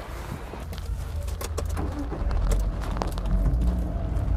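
Low engine and road rumble of a JAC M4 van heard from inside the cabin as it pulls away, growing louder about two seconds in, with scattered light clicks and knocks.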